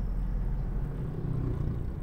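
Steady low rumble of engine and road noise heard inside a moving car's cabin.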